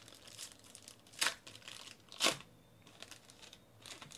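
Silver foil trading-card pack wrapper crinkling in the hands and being torn open, with two louder short rips about a second and two seconds in.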